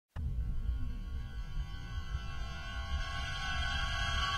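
Intro of a psychedelic trance (psytrance) track: a low rumbling drone under held synth tones that slowly swell in level, with one tone gradually rising in pitch.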